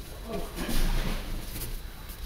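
A person being taken down onto a padded martial-arts mat: a muffled thud and the rustle of heavy cotton gi cloth, loudest about a second in.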